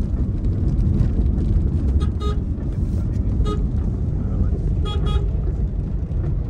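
Steady low road and engine rumble inside a small car's cabin while driving, with short vehicle horn toots from traffic about two seconds in and again about five seconds in.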